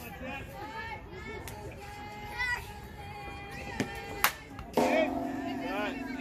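Voices calling and chanting in a sing-song way. A sharp pop comes a little past four seconds in, then a long held note starts near the end.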